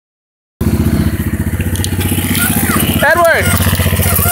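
Quad (ATV) engine idling steadily, starting abruptly about half a second in. A person's voice comes in briefly just after three seconds.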